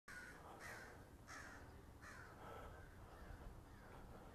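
Faint bird calls, several short calls repeated over the first two and a half seconds, above a low background rumble.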